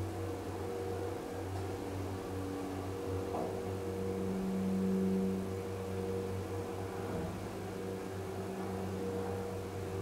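KONE hydraulic elevator travelling upward, heard from inside the car as a steady mechanical hum with several held tones. A lower tone swells and grows louder for about a second midway, then settles back.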